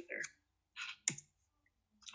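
A single sharp click about a second in, from the computer running the presentation as it advances to the next slide, with a short soft hiss just before it.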